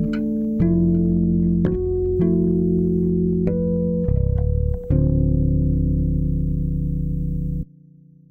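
Electric bass guitar playing a slow line of long held notes, changing about once a second, then cutting off sharply near the end.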